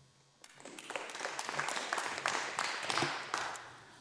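Members of the parliament clapping in applause: it starts about half a second in, swells, and dies away toward the end.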